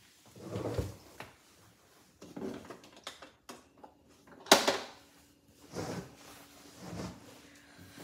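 Handling noises from fitting a cold-therapy wrap and its hose on a leg: soft rustles and bumps, with one sharp knock about four and a half seconds in, the loudest sound.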